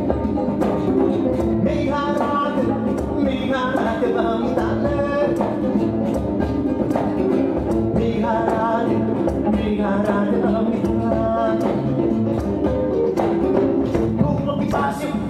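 Live acoustic music: an acoustic guitar and a marovany, a Malagasy wooden box zither, are plucked together in a steady rhythm. A voice sings in phrases of a second or two over them.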